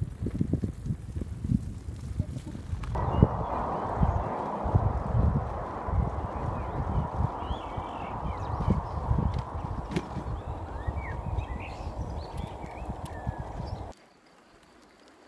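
Wind buffeting the microphone of a camera on a moving bicycle, with uneven rumbling bumps at first. About three seconds in it changes abruptly to a steadier rush of riding noise, with birds chirping over it in the second half.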